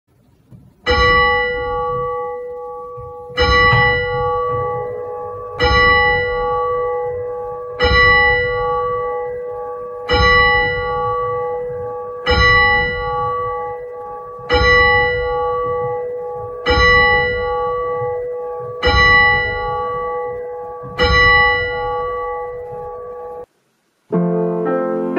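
A single church bell tolled ten times on the same note, a strike about every two seconds, each ringing on between strikes, as the call to Sunday communion. The ringing cuts off suddenly near the end.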